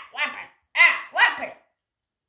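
A young child's voice making short, wordless play cries, about three quick bursts that each fall in pitch, the last two close together.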